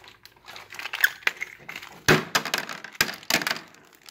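A plastic hardware bag crinkling as it is handled and emptied, with small stainless steel screws and fittings clattering onto a hard plastic boat hull: a run of sharp clicks and rattles.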